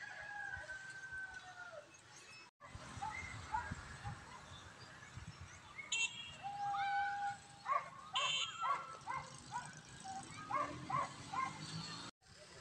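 Animal calls: one long drawn-out call in the first two seconds, then, after a brief break, a run of short pitched calls at about two or three a second in the second half.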